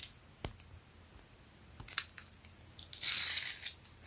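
Handling noise from a tape measure and a cotton T-shirt: a few light clicks and taps, then a short rustle near the end.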